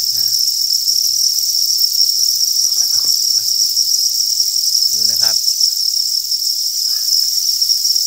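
A dense chorus of farmed crickets chirping together, a steady high-pitched trill that never lets up.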